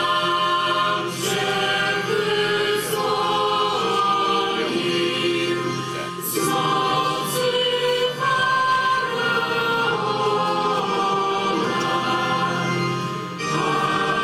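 Choir singing a sacred hymn at the offertory of a Catholic Mass: long held notes in phrases, with brief breaks about six seconds in and near the end.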